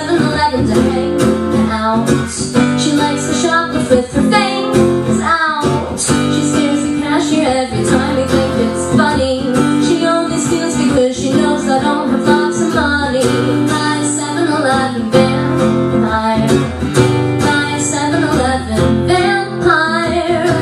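A woman singing to her own strummed acoustic guitar, played live.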